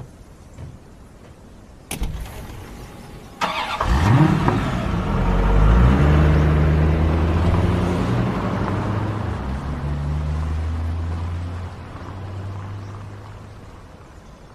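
A black minivan's sliding door shuts with a thud about two seconds in. The engine starts a moment later with a rising pitch, then the van runs steadily as it pulls away, its sound fading over the last few seconds as it drives off.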